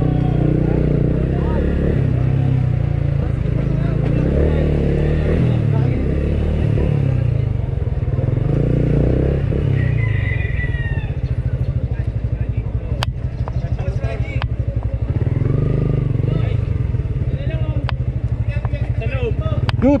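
Motorcycle engine running at low speed as the bike rolls slowly and comes to a stop, settling into a steady idle in the second half. A couple of sharp clicks come around the middle.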